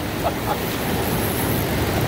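Fast river rapids rushing steadily.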